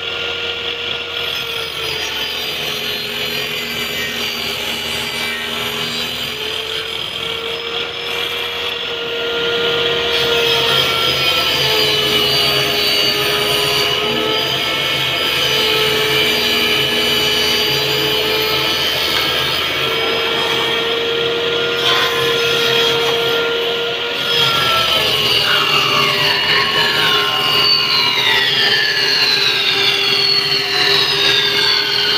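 Home-built table saw running, its blade cutting through a plywood sheet: a steady motor whine that grows louder about ten seconds in, as the cut takes load. In the last few seconds, falling whistling tones join it.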